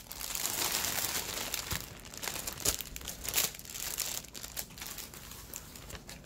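Thin plastic bags crinkling and rustling as small zip-lock bags of diamond-painting drills are handled, with scattered sharp crackles throughout.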